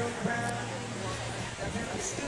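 Live concert music with held notes and a steady bass line, with people talking nearby over it.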